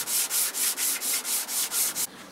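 Sandpaper rubbed by hand back and forth over a wooden surface, a rhythmic scratchy hiss of about four strokes a second.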